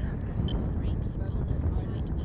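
Wind buffeting the microphone: a steady low rumble that flutters in level.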